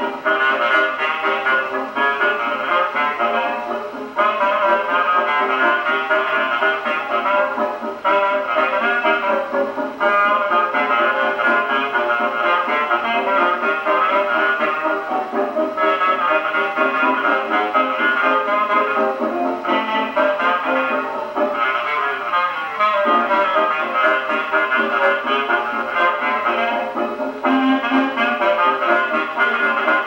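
A 1925 hot dance-band 78 rpm record with trumpet and trombone, played acoustically through the double soundbox and horn of a 1926 Duophone Junior Table Grand gramophone. The sound is narrow and horn-like, with no deep bass or high treble.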